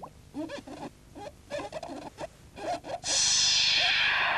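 A TV programme's title-sting sound effect comes in suddenly and loud about three seconds in: a sustained, bright swell held at a steady level. Before it there are only faint, brief snatches of sound.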